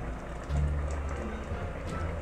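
Faint low-pitched background music, its bass notes changing twice, with a single light click near the end.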